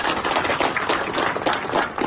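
A small group applauding: a dense patter of many sharp hand claps.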